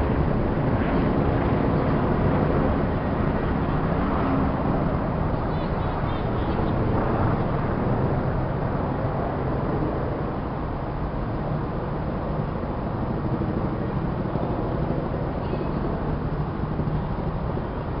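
Steady low engine rumble with indistinct voices in the background, easing slightly in the second half.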